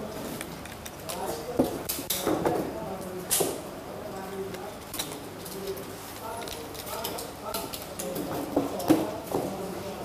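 Indistinct background chatter of people talking, with a few light clicks and knocks.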